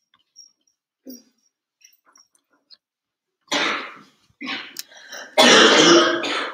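A person coughing and clearing their throat: one short cough about three and a half seconds in, then a louder, longer bout near the end.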